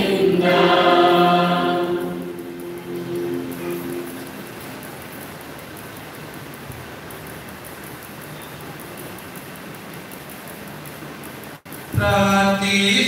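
Church choir singing the end of a sung phrase, with low held notes fading out over the first few seconds. After that, only a steady hiss of room noise, and the sound cuts out for an instant near the end.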